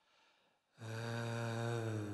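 A low voice intoning a long, steady "om"-like chant, starting just under a second in and held on one pitch.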